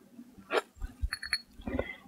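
Faint handling sounds of a stencil brush dabbing liquid starch onto a small fabric applique piece and fingers working the fabric: a few short soft taps and rustles, the sharpest about half a second in.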